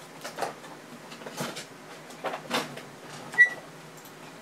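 A few soft knocks and rustles of things being handled, then a short, high-pitched beep about three and a half seconds in.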